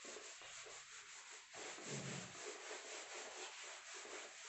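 Whiteboard duster wiping marker ink off a whiteboard, a faint rubbing with quick repeated strokes.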